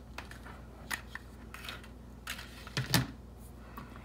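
Light handling sounds of a hot glue gun and stiff paper on a tabletop: scattered soft clicks and taps, with one louder knock about three seconds in.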